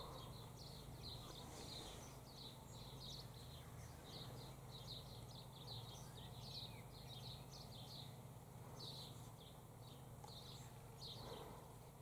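Faint, quick high-pitched chirps from small birds, repeating about two or three times a second over a low steady hum.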